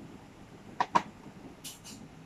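Two sharp clicks close together about a second in, then two short hissing shakes near the end, as dried herbs are shaken from a spice shaker over a wok of frying garlic.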